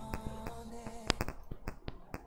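Quick run of sharp computer keyboard or mouse clicks, about six or seven a second, in the second half, over faint background music.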